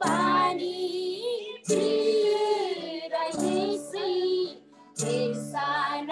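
A woman singing a devotional song over a video call, in three phrases: a short one, a long middle one, and a third starting near the end, with brief breaks between.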